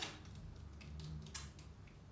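Quiet room with a faint low hum and a single sharp click about a second and a half in, the sound of a word card being pressed onto a classroom calendar board.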